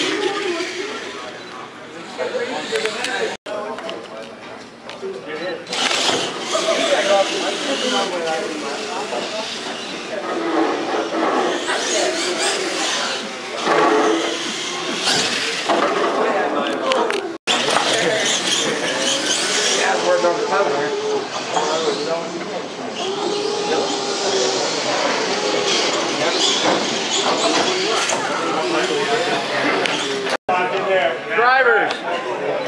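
Indistinct chatter of many people in a large hall, over the running of electric Clod Buster-type RC monster trucks driving the course. The sound breaks off sharply twice, about a third and about halfway through.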